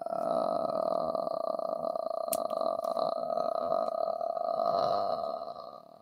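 A man's long, drawn-out, gravelly "uhhh" held steady for about five and a half seconds as he searches for a word, trailing off near the end.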